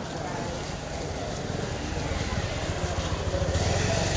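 Helicopter cabin noise: the engine and rotor running with a fast low chop, growing louder toward the end.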